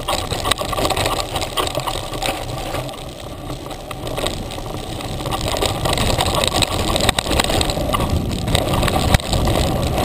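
Mountain bike riding fast down a dirt trail, heard from a camera on the handlebars: knobby tyre noise on dirt, the bike rattling over bumps, and wind rumbling on the microphone. A sharp knock comes about nine seconds in.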